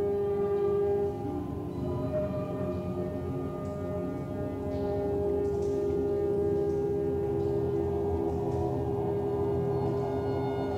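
Experimental drone music: several steady, layered tones held for seconds over a low rumble, with some pitches changing about a second and two seconds in.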